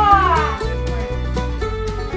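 A cat's meow in the first half second, falling in pitch, over background country music with plucked strings.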